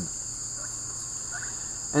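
Steady high-pitched chorus of insects, buzzing without a break in several close bands.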